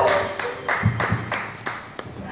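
Hand clapping, separate claps about three a second, after the end of a karaoke song whose last sung note fades out at the start.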